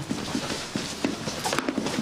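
Footsteps on a hard floor, a few irregular knocking steps over room noise.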